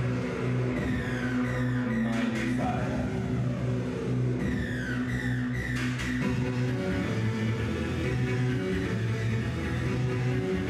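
Electronic synth-pop instrumental played on synthesizer keyboard: held synth bass notes and chords with falling sweeps about a second in and again around the middle.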